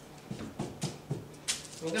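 A few light taps and clicks with soft rustling as fabric and cutting tools are handled on a cutting table, the sharpest click about one and a half seconds in.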